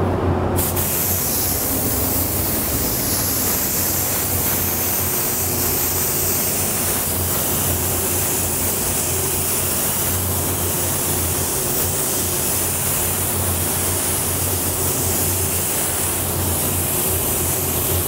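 Gravity-feed spray gun spraying a coverage coat of coarse aluminum metallic base coat at about 20 PSI. It gives a steady hiss of air that starts about half a second in, over a steady low hum.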